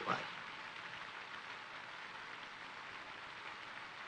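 Steady, faint hiss of an old optical film soundtrack, even and unchanging.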